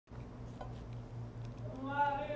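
Low steady hum. Near the end, a short, drawn-out pitched vocal sound begins and falls slightly in pitch.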